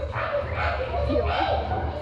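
Cartoon character voices, with yelping, pained creature-like cries, played over a theater's sound system and recorded from the audience, over a low, steady rumble.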